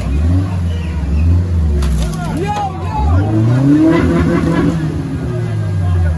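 A UAZ off-road vehicle's engine revving in bursts as it pushes through deep mud, its revs rising sharply near the start and again about three seconds in. Shouting voices are heard over it in the middle.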